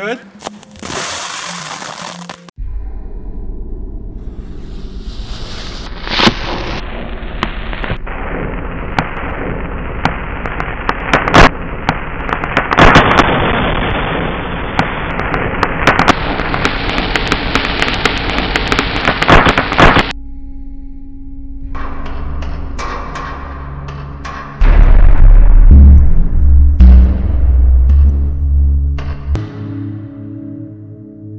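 Pyro Viagra firecracker crackling and popping: a long, dense run of sharp cracks, then a loud deep boom near the end. Steady music tones sound under the later part.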